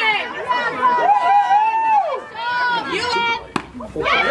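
Softball players shouting and chanting in several overlapping voices, with long drawn-out calls. A single sharp crack sounds near the end.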